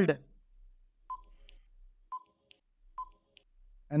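Countdown-timer sound effect: three short electronic beeps about one a second, each a brief tone with a click at its onset.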